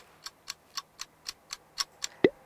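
Countdown-timer ticking sound effect: steady, clock-like ticks, about four a second.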